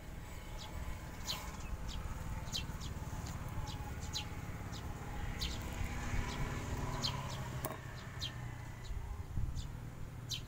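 Small birds chirping: short, high chirps repeated irregularly, about two a second, over a steady low rumble.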